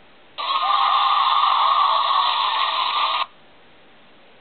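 A burst of static-like noise, about three seconds long, that starts and cuts off suddenly.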